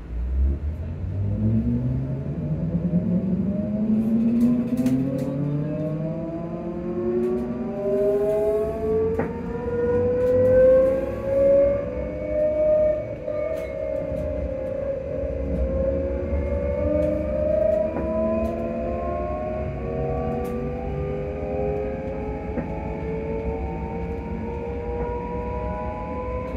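ScotRail Class 334 electric multiple unit pulling away from a station, heard from inside the carriage. The electric traction whine starts up and rises steadily in pitch as the train accelerates, dips a little about halfway, then climbs slowly again over a low running rumble.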